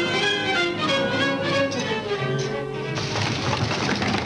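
Orchestral film score with violins, a line of notes falling in pitch through the middle; about three seconds in the music changes to a busier, noisier passage.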